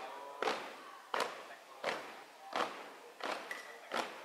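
A marching troop's shoes stamping in unison on a hard court, a sharp thud about every 0.7 seconds in a steady marching cadence.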